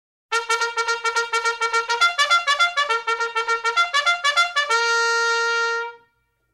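A trumpet fanfare: quick repeated staccato notes, about seven a second, first on one pitch and then stepping through a short run. It ends on one long held note that cuts off near the end.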